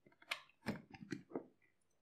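A few short, faint clicks and plastic handling sounds in quick succession as a plastic shampoo bottle's flip-top cap is opened and the bottle is squeezed.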